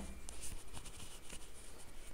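Faint scratching and light ticks of a pen-style stylus on a writing surface.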